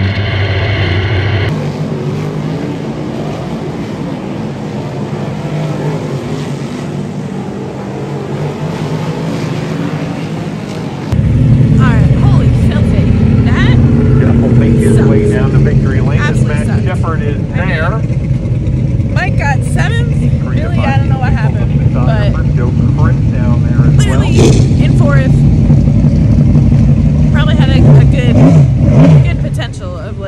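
Dirt-track modified race car engines running hard. First comes in-car race audio; then, after a sudden cut about eleven seconds in, a loud steady engine drone from cars circling the track, with a woman talking over it.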